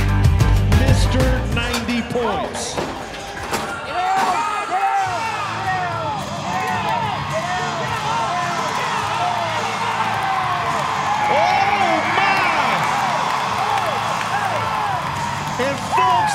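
A short burst of music with a heavy bass beat, then a packed arena crowd shouting, whooping and cheering during a bull ride, the cheering swelling in the second half.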